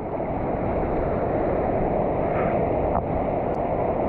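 Waves breaking and whitewater rushing over the reef: a steady wash of noise, with wind buffeting the microphone.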